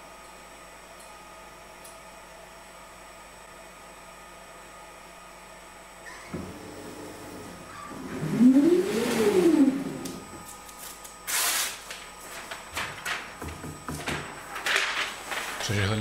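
Grando 4060 automatic heat press: a steady low hum, then about eight seconds in its servo drive moves the heating head across with a whine that rises and falls in pitch. Afterwards come short rustling bursts and clicks as the pressed shirt and transfer film are handled.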